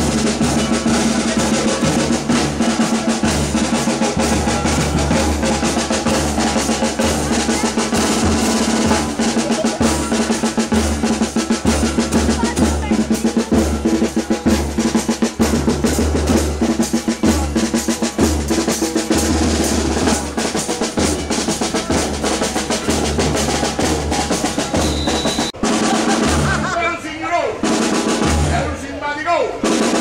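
A street band of snare drums and bass drums playing a steady marching beat, with snare rolls over a regular bass-drum thump. Voices call out near the end.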